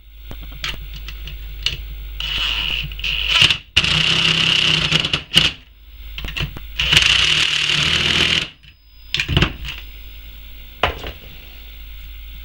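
Cordless drill-driver running a screw into an alternator's rear housing: a few short spurts, then two longer runs of about two seconds each in the middle, with light clicks between them.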